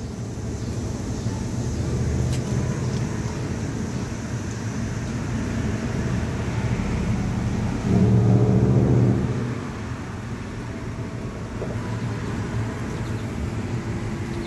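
Steady low hum of road traffic. A louder, deeper engine sound from a passing vehicle comes in for about a second and a half just past the middle.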